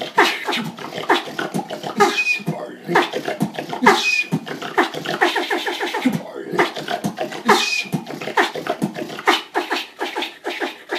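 Solo human beatboxing: a fast, dense run of mouth clicks and percussive vocal drum sounds, with three brief high squeaks spread through it.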